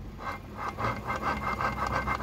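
Gears in a Suzuki four-stroke outboard's lower-unit gearcase grinding as the driveshaft is turned, making a rhythmic rasping hum of about four or five strokes a second over a faint steady whine. The hum is the sign of a gearcase that had seawater in its gear oil.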